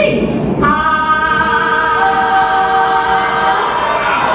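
Choir voices holding a sustained chord on a performance soundtrack played through a club sound system, starting about half a second in; a higher note joins about two seconds in and the chord fades out near the end.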